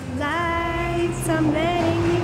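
Music with a woman's voice singing one long held note, which breaks briefly a little past halfway and then carries on, over a steady bass.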